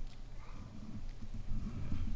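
Low, uneven rumble with a few soft knocks: people shifting and stepping about on a platform, picked up as handling and movement noise by the microphones.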